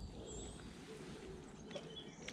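Quiet outdoor ambience with a few faint, short bird chirps.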